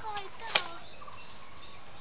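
A single sharp knock about half a second in, as a child's rolling backpack is set down on a concrete path, followed by a faint steady background.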